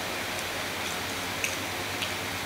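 Steady background hiss with a few faint, short soft clicks and squishes from fingers working biryani rice on a steel plate.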